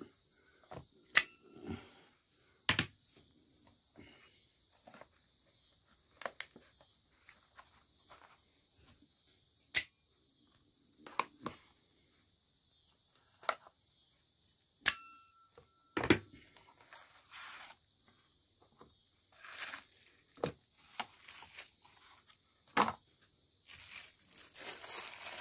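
A cardboard knife box being cut and pried open with a tanto-bladed knife: scattered sharp clicks and snaps, short scrapes of the blade and tearing of the packaging, with the knife wrapped in plastic handled near the end.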